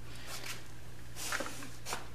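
Faint rubbing as a small brush spreads assembly lube over a tape-wrapped spline shaft, a few soft strokes, over a steady low hum.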